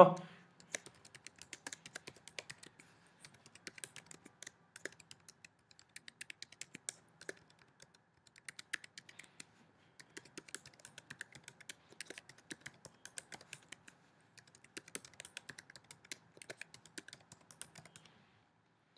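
Computer keyboard typing: runs of quick, faint key clicks in irregular bursts with short pauses between them.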